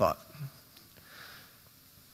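A man's voice finishing a word, then a pause in which he draws a short, faint breath through the nose over quiet room tone.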